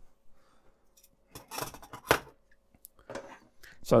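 Light clicks and knocks of small electronics hardware, a circuit board and stepper-motor parts, being handled and set down on a wooden workbench, with a sharper knock about two seconds in.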